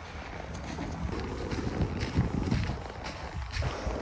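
Footsteps in snow while walking, with wind rumbling on the phone's microphone.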